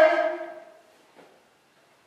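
A man's voice drawing out the end of a word and fading off, followed by a pause of near silence with one faint soft sound about a second in.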